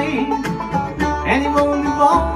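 Live bluegrass band playing: banjo picking over acoustic guitar and upright bass, with the bass notes pulsing underneath.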